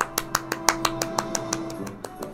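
Film-score music: quick, even plucked notes, about six a second, over a held note that drops away near the end.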